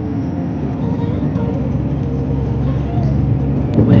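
Steady cabin noise of a car driving on a wet highway: a low engine and road drone with tyre hiss.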